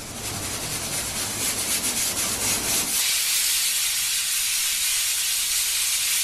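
Steady hiss of food cooking on a kitchen stove. It thins to a higher hiss about halfway and cuts off suddenly near the end.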